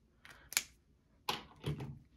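A few short, sharp clicks and taps from a plastic highlighter pen: the loudest comes about half a second in, and more follow near the end as it is capped and set down on the table.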